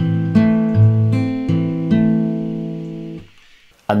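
Martin OM-21 steel-string acoustic guitar fingerpicked in a slow Travis pattern on an A minor chord, alternating bass notes under higher notes, a pluck about every 0.4 s. The notes ring together and are damped about three seconds in.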